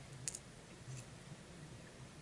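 Faint clicks and scrapes of a small metal tool picking at an LED light's circuit board: a pair of light clicks near the start and another about a second in, as the glued-on lens over the LED is worked off.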